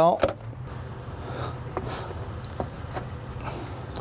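Rubber intake hoses being worked by hand onto the ends of an aluminium intake Y-pipe: light handling clicks and a brief rubbing scrape near the end, over a steady low hum.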